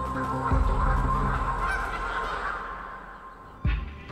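A flock of Canada geese honking as they take off together, the clamour dying away after about two and a half seconds. A short thump comes near the end.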